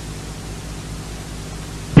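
Steady hiss from the recording itself, with a low electrical hum under it.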